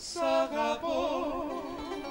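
Greek song with guitar and bouzouki accompaniment: a voice sings a few short notes, then holds a long note with a wide vibrato.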